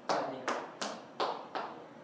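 Hand claps, five sharp claps in a quick, slightly uneven rhythm with a short room echo after each.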